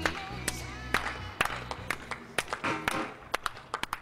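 Music soundtrack fading out, its low sustained notes dying away in the first half, with sharp irregular clicks that grow quieter and sparser toward the end.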